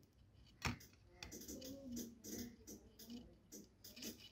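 Faint crackling and irregular ticking of flux sizzling as a soldering iron is drawn over flux-coated stranded copper wire on a phone's charging-port pads, wicking the old solder away, with one sharper click about two-thirds of a second in.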